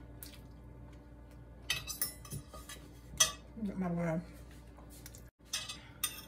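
A fork clinking and scraping against a plate while eating, a few sharp clinks with the loudest about three seconds in.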